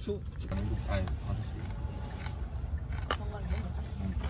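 Low, steady rumble of a car heard from inside the cabin, with soft talking over it.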